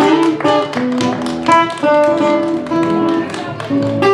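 Acoustic guitar playing a quick run of picked notes, with people clapping along in time.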